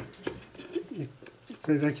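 Faint clicks and light handling as fingers work at a small cable connector inside an opened iMac, with a sharp click at the start. A spoken word comes in near the end.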